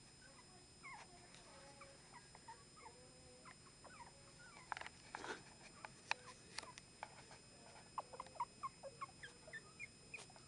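Chihuahua puppies giving faint, short, high squeaks and whimpers, many small chirps coming more often in the second half, with a few soft knocks mixed in.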